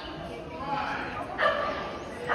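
A dog barks once, loud and short, about one and a half seconds in, over a background of voices.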